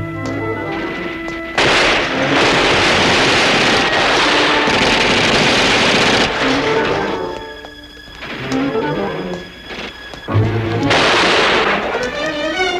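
Orchestral score with brass, twice broken by loud battle sound effects of gunfire and explosions: a long stretch lasting several seconds, then a shorter burst near the end.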